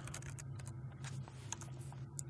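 Computer keyboard typing: a quick run of light keystrokes as a command line is typed out and entered, over a faint steady low hum.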